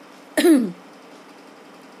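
A woman coughs once, a short, loud cough about half a second in, falling in pitch.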